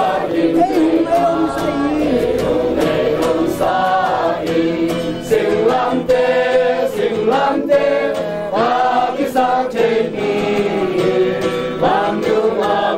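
A mixed group of men and women singing a hymn together in unison, without pause, with an acoustic guitar strummed along.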